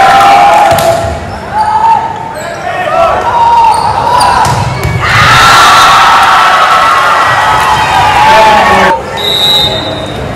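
Players and spectators shouting and cheering in a gymnasium during a volleyball rally, with the ball being hit and sneakers squeaking on the hardwood court. The cheering swells from about halfway through, and a short high whistle sounds near the end as the point is decided.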